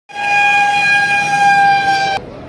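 A vehicle's warning signal held on one steady, unwavering note.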